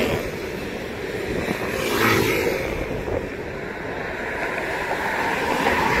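Road traffic passing close by: cars and scooters going by in a steady rush of tyre and engine noise, swelling about two seconds in and again near the end as vehicles pass.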